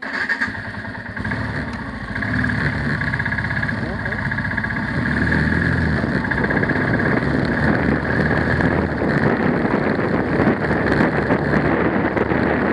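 Motorcycle engine starting suddenly and pulling away, getting louder over the first couple of seconds as the bike gathers speed, then running steadily as it rides along.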